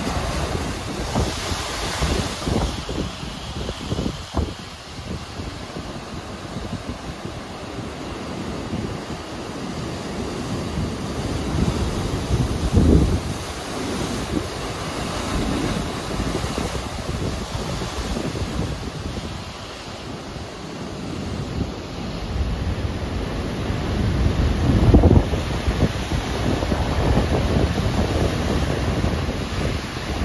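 Heavy surf breaking on concrete breakwater blocks and rock, a continuous churning wash with big crashes about 13 seconds in and again around 25 seconds. Wind buffets the microphone throughout.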